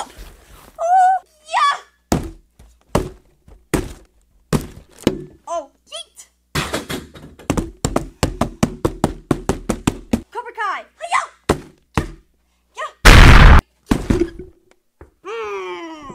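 Large cardboard toy box handled and opened on a wooden table: a series of sharp thunks and knocks, with a quick run of taps in the middle. Short vocal exclamations come in between, and a very loud burst of noise lasting about half a second comes late on.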